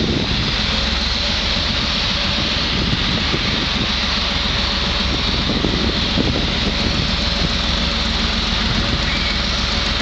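EMD GR12 diesel-electric locomotive's two-stroke diesel engine running at a steady, even beat as it pulls a local passenger train slowly out of the station, under a steady high hiss.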